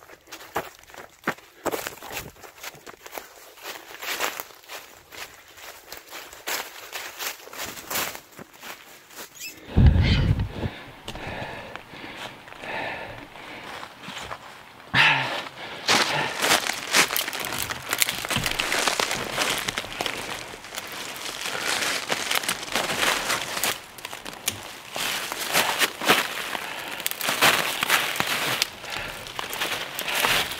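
Footsteps running through dry fallen leaves, a fast run of crunching steps. About ten seconds in there is a thump, and the sound changes to closer, continuous rustling and crunching of dry leaves as someone moves about on them.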